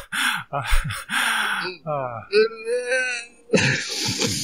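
Human vocal sounds: a few hesitant 'uh's and a sharp breath, then a longer wavering voiced sound in the middle of laughter.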